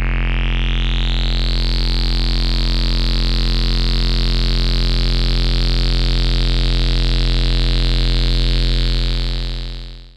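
Low, buzzy synthesizer drone from an oscillator driven hard through a chain of Playertron Jadwiga single-pole filters in Voltage Modular, with Jadwiga's input saturation stage overdriven. The tone grows brighter and more distorted over the first couple of seconds as the drive is pushed up, holds steady, then fades out near the end.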